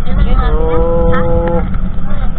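A steady low rumble with one long held note from a man's voice over it, lasting about a second and sliding up into pitch at its start.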